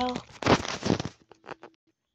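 Rustling and a few small clicks of a phone being handled and moved close to the microphone, after the last word of a boy's voice.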